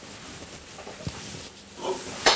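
Faint, breathy laughter from a man, with a single small tick about a second in.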